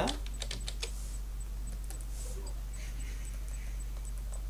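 A quick run of computer keyboard clicks about half a second in, then a few fainter clicks, over a steady low electrical hum.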